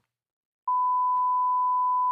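Pure sine-wave test tone from a software test oscillator, starting abruptly about two-thirds of a second in and holding one steady pitch at a constant level.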